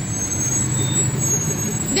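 Fire engine's diesel engine running steadily as the truck drives slowly past close by.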